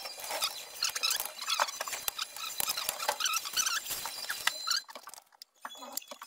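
Fast-forwarded work audio: clatter, clicks and voices sped up into rapid, high-pitched squeaky chatter, with a brief lull near the end.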